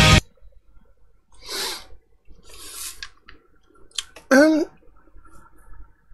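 A heavy metal track with strings cuts off abruptly at the very start. Then a man breathes out twice, there are a couple of sharp clicks, and he makes a brief voiced 'hmm' about four seconds in, with nothing else until he speaks.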